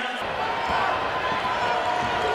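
Basketball arena crowd noise, with a ball being dribbled on the hardwood court as play goes on.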